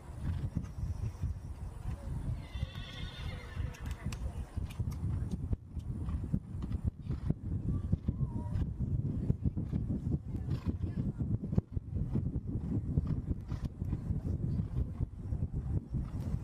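A show-jumping horse cantering on turf, its hoofbeats coming as irregular thuds over a constant low rumble, with a short wavering whinny about three seconds in.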